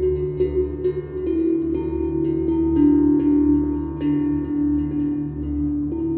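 Slow ambient new-age background music: sustained bell-like, ringing tones over a steady low drone, with soft struck notes changing pitch about every second.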